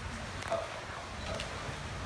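California sea lion's flippers slapping on wet concrete as it walks, two soft slaps about a second apart, over a steady low rumble.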